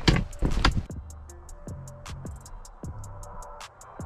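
A steel ice chisel (spud bar) strikes thick ice several times in the first second. Then background music with a quick ticking beat and low notes takes over.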